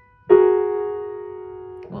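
A piano chord of a few neighbouring keys, a fingering clump in F-sharp major, struck once about a third of a second in and left ringing as it slowly dies away. A spoken word comes right at the end.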